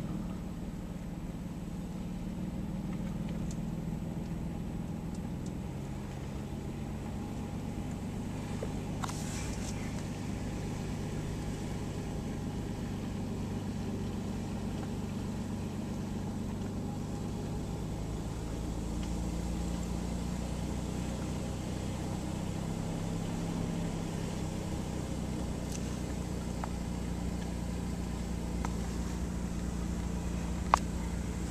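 Low, steady engine hum and road noise from a car rolling slowly downhill, heard from inside the car, with the engine's pitch shifting slightly now and then.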